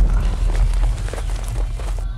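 Someone running through undergrowth: irregular footfalls and rustling over a heavy low rumble that begins abruptly.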